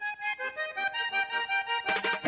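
Accordion music: a melody of short held notes played alone, with no bass or percussion under it.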